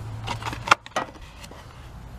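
Two sharp clicks about a quarter second apart, a little under a second in, over a faint low hum that fades early: handling noise as the camera and small parts are moved.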